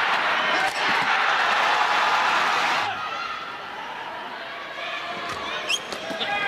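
Arena crowd cheering and shouting after a badminton rally, cut off suddenly about three seconds in, leaving a quieter murmur of voices in the hall.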